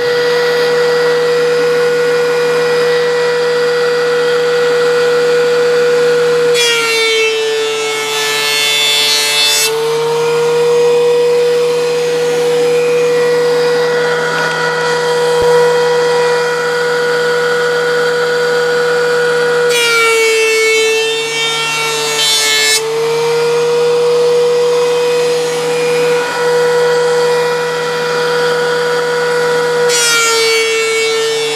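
Benchtop thickness planer running with a steady motor hum. Twice, about 7 s and 20 s in, a resawn pine board goes through and the cutterhead takes a light skim pass for about three seconds. Each time the motor's pitch drops slightly under the load and the cut adds a harsh hiss, and another pass starts at the very end.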